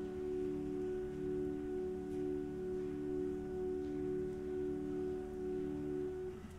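Pipe organ holding a long sustained chord of pure, flute-like tones, its loudness wavering gently about once a second. This is the final held chord of the prelude.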